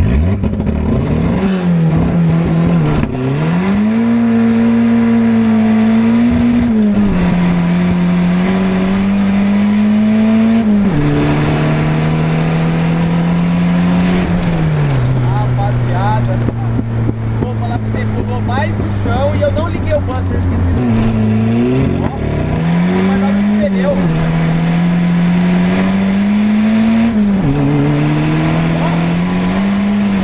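Turbocharged VW Gol's engine heard from inside the cabin, pulling hard through the gears. The note climbs and drops at each gear change several times, settles to a lower, steady note for a few seconds in the middle, then climbs through the gears again near the end.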